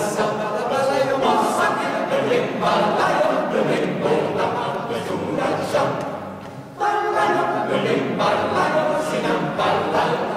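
A choir singing a cappella. The phrase fades away about six seconds in and the voices come back in together, full and sudden, about a second later.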